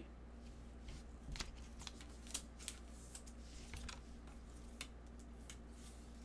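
Faint, irregular clicks and flicks of trading cards being handled and flipped through one by one by gloved hands.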